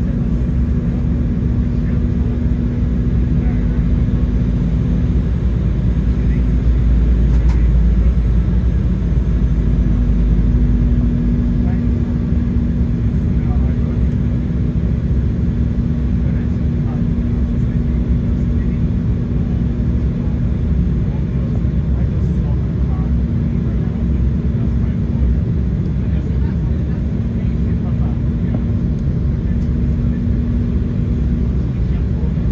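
Cabin noise of an Embraer E190 airliner in flight, heard from a window seat beside the wing: a steady low roar of airflow and its General Electric CF34 turbofan engines, with a steady hum running through it. The deep rumble swells a little for a few seconds in the middle.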